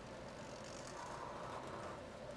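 Sharpie marker drawing on paper: a faint scratchy stroke of the felt tip starting about half a second in and lasting about a second, over a steady low room hum.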